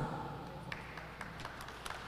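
Quiet hall room tone with a few faint scattered clicks.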